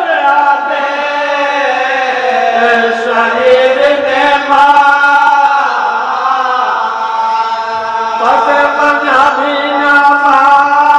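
Group of men chanting an Urdu marsiya (Shia elegy), unaccompanied: a lead reciter at the microphone with the men around him joining in, in long, drawn-out melodic lines.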